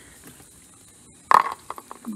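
A single sharp plastic snap a little over a second in, followed by several light clicks, as the lawn mower's filter housing is opened and the water-soaked filter handled.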